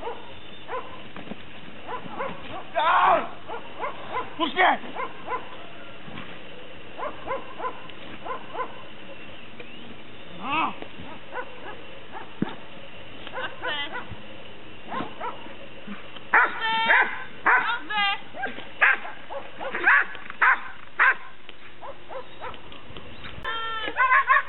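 A dog barking and yipping at intervals during bite work with a man in a padded bite suit, with the calls coming thicker in the second half.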